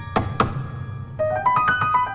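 Two sharp percussive knocks struck on the open grand piano during a jazz improvisation, the second about a quarter second after the first. Played piano notes come back about a second in.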